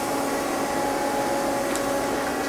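Steady machine hum of a powered-up Mazak CNC lathe sitting idle: an even whir with a few faint steady tones in it.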